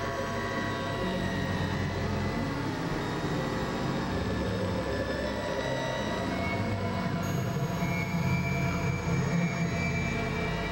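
Dense experimental electronic drone: many steady tones layered over a low rumble and hiss, with no beat. A new higher tone comes in about seven seconds in.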